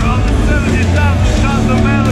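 A man talking close to the microphone over a loud, steady low rumble from an amplified live metal band playing nearby.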